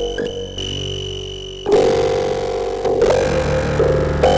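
Electronic music played live on analog synthesizers: layered sustained tones that change notes every second or so, with a louder, buzzier layer coming in just under halfway through.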